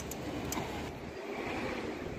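Steady low rumble of outdoor city noise, with two short sharp clicks in the first second.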